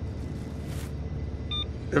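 Steady low rumble, like a vehicle running, with a short electronic beep about one and a half seconds in.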